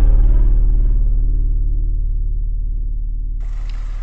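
A single deep, low musical sting, a gong-like or synthesized tone, rings on and fades slowly after being struck just before. Near the end a faint room hiss comes in underneath.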